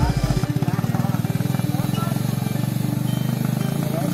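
Motor tricycle cargo carrier's engine running as it drives away, a steady rapid pulsing that grows slightly fainter toward the end.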